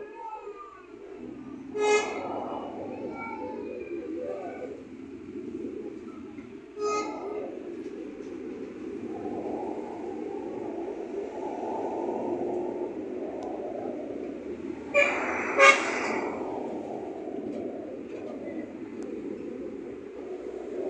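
City traffic running steadily, with car horns honking: a short honk about 2 seconds in, another about 7 seconds in, and two louder honks close together about 15 seconds in.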